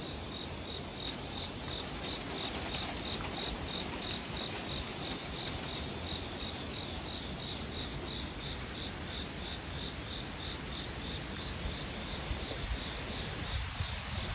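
An insect chirping in an even, high-pitched rhythm, about three chirps a second, over a steady outdoor background hiss. A second, higher steady insect buzz joins about halfway through.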